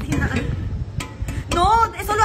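A low rumble, then about a second and a half in a woman's high, drawn-out call rising and falling in pitch, calling after a cat.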